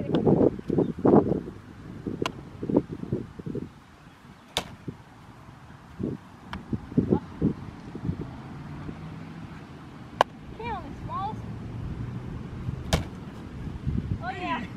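A baseball smacking into a pitchback rebounder net and into leather gloves as two players throw and field the rebounds. It comes as a sharp crack every two to three seconds, with faint voices between.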